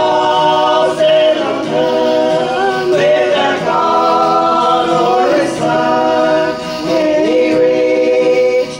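Gospel vocal group of mixed men's and women's voices singing in harmony, holding long notes, with acoustic guitar backing.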